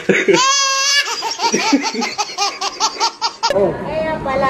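A baby laughing hard: a high squeal, then a fast, regular run of laughs, about six a second, that cuts off suddenly near the end.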